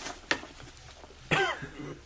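A man's single short cough or throat clearing a little over a second in, after two faint clicks in the first half second.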